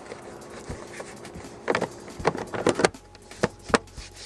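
Suzuki Forenza's plastic fuse-panel cover being fitted back into the dashboard side: a run of sharp plastic clicks and knocks about halfway through, with a few more near the end.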